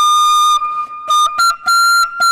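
A snake charmer's reed pipe playing a reedy, high tune. It holds a long note, softens for a moment, then gives a few short notes and settles on another held note a step higher.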